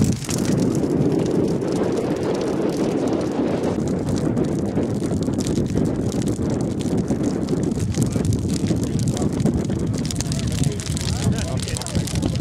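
Steady wind noise on the microphone over a large open bonfire burning, with people talking indistinctly.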